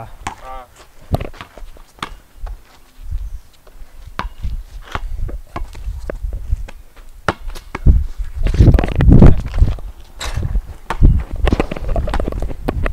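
A basketball bouncing and sneakers stepping and scuffing on a concrete driveway during a pickup game: a string of short, sharp knocks and thuds, with a cluster of heavier thumps in the last third.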